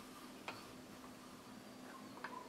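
One short faint click about half a second in, and a weaker one near the end, as the Mossberg 590 Mariner pump shotgun is handled over its cardboard box. Otherwise quiet, with a faint steady hum.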